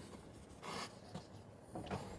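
French bulldog sniffing at a wooden step, faint: one short breathy sniff a little after half a second in, and a couple of softer ones later.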